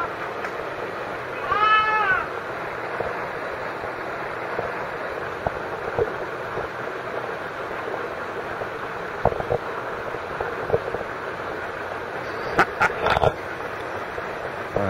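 A baby goat bleating once, about two seconds in, as it struggles in the water, over a steady rush of flowing water. A few sharp knocks come near the end.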